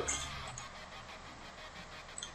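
Faint steady hiss with a low hum: microphone room tone.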